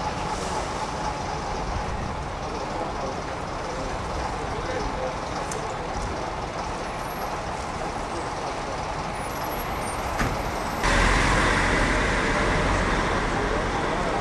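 Vintage coach engines running as the coaches pull slowly past, over a steady background of street and crowd noise. About three-quarters of the way through, the sound jumps abruptly louder, with a stronger low engine sound, as a coach passes close.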